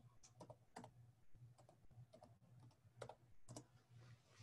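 Faint typing on a computer keyboard: about a dozen irregular keystrokes as a web address is entered, over a steady low hum.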